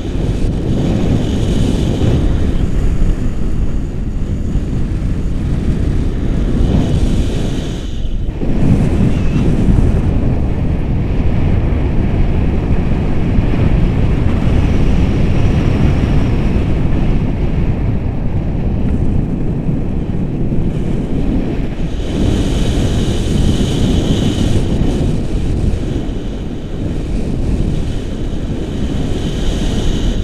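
Airflow rushing over the camera's microphone in flight under a tandem paraglider, making loud, steady wind noise that dips briefly about eight seconds in.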